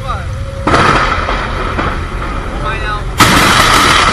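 Close thunder from nearby lightning strikes: a sudden crack about a second in, then a louder, sharper one about three seconds in, over the steady noise of wind and heavy rain.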